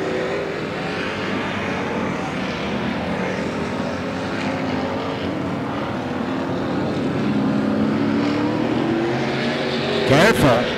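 Several figure-eight race car engines running together around the track, their overlapping notes rising and falling as the cars accelerate and slow; one engine note climbs steadily near the end.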